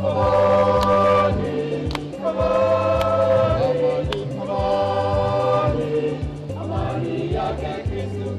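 Choir singing a gospel-style hymn in several voices over a steady low instrumental accompaniment, with sharp percussive strokes about once a second keeping the beat.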